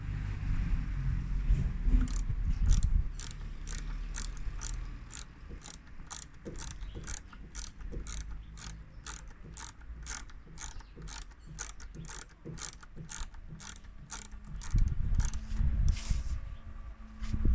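Socket ratchet wrench clicking steadily, a little over two clicks a second, as it is swung back and forth undoing a screw. Low rumbling noise at the start and again near the end.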